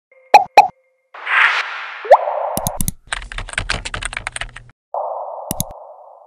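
Logo-intro sound effects: two quick pops, a whoosh with a short rising swoop, a rapid run of typing-like clicks for about two seconds, then another whoosh that fades out.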